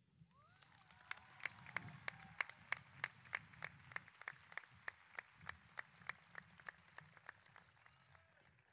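Audience applauding. Clear, even claps about three a second stand out over softer clapping.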